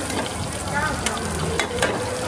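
Food frying at a market stall: a steady sizzling hiss, with a few sharp clicks about a second in and again near the end, under faint voices.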